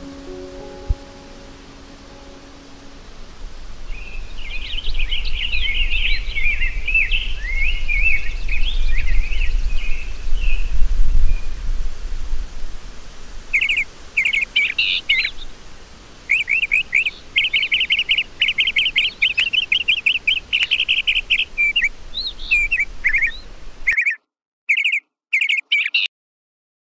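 Soft piano notes die away, then birdsong: varied chirping phrases, and later a fast repeated trill, over a low steady rumble. The sound cuts off abruptly near the end, leaving only a few last chirps.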